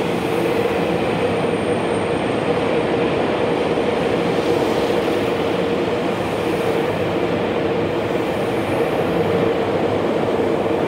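Yokohama Minatomirai Railway Y500-series electric train pulling out, its cars rolling past close by with a loud, steady rumble and a steady hum-like tone.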